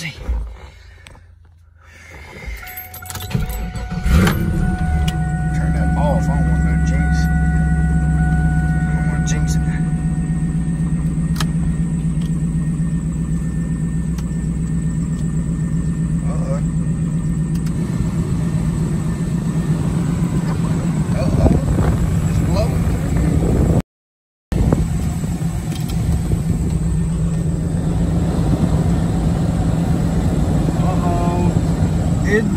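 Camaro engine cranked and started about four seconds in, then idling steadily with a low hum. A few thin steady high tones sound for several seconds around the start.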